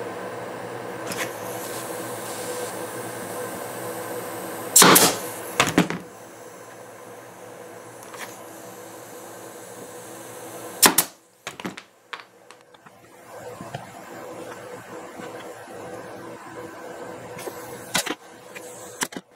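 Pneumatic nailer firing into small pine blocks: a few sharp shots, the loudest about five seconds in and another pair near eleven seconds, over a steady background hum.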